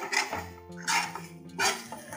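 A metal spoon stirring and scraping chillies and onions in a nonstick wok, three short strokes about a second apart, over background music with held notes.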